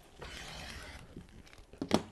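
Rotary cutter rolling along the edge of a ruler, slicing through several layers of folded cotton fabric on a cutting mat: a soft, even rasp lasting about a second, starting just after the beginning.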